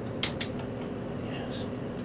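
Gas range's burner knob being turned and its spark igniter clicking, two quick sharp clicks in the first half second as the burner lights under the percolator.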